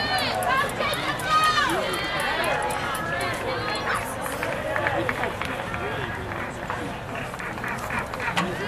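Several people's voices calling out and talking at once over crowd chatter at an outdoor track meet, the loudest, high-pitched calls in the first few seconds, then quieter background chatter.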